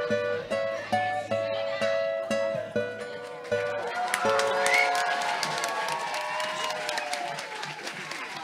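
Live music with plucked guitar notes playing a last few bars, ending on held, fading notes. About halfway through, crowd voices and scattered clapping rise as the song winds down.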